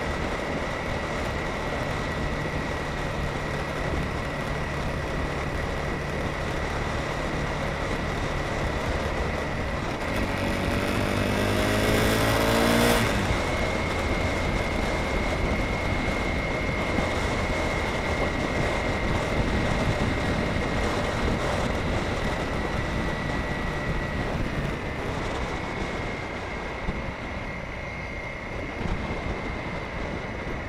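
Motorcycle engine running on the move, with road and wind noise and a steady high whine. About ten seconds in, the engine rises in pitch and gets louder as it speeds up, then drops away suddenly a few seconds later.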